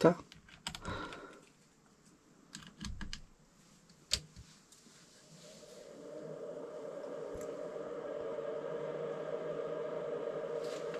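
Bench power supply being adjusted by hand: a few small clicks and knocks from its knobs and test leads. From about five seconds in comes a steady hum that builds up and then holds.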